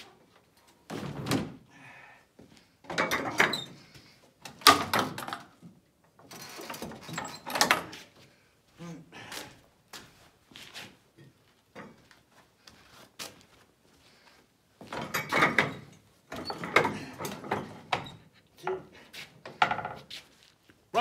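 Plastic hood and body panels of a snowmobile being handled and pressed into place: a string of irregular knocks and rattling thuds, in two clusters with a quieter stretch of small clicks between.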